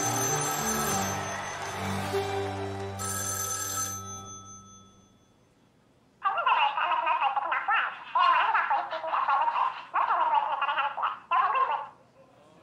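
A musical sting with a telephone ringing fades out over the first few seconds. After a short pause, a garbled, unintelligible voice comes through a telephone earpiece for about six seconds, thin and without bass.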